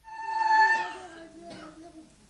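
A woman's high-pitched, drawn-out vocal cry that starts suddenly, peaks about half a second in and fades within a second. A lower, wavering voice follows.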